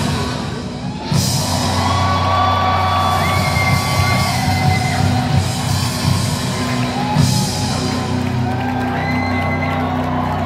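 Rock band playing live, with held guitar notes over a steady low bass drone and fans whooping. The music dips briefly about a second in, then comes back.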